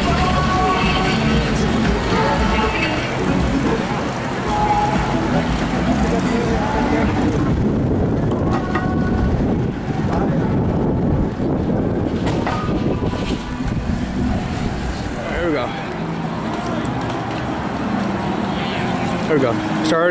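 Street sound from inside a large group of cyclists riding at night: scattered voices of riders over a steady rumble of wind and road noise on a moving microphone.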